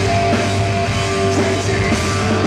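Gothic metal band playing live at full volume: distorted guitars, bass and drum kit, loud, dense and unbroken.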